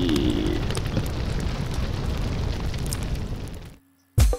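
Cinematic sound effect of a large building burning: a dense, steady rumble of fire that fades out and stops just before the end.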